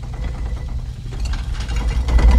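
Deep, steady rumble of an approaching helicopter with faint rattling over it, growing louder towards the end, heard through a TV episode's soundtrack.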